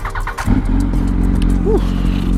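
2006 Yamaha R1's inline-four engine running at a steady low idle, its note holding without revving, starting about half a second in.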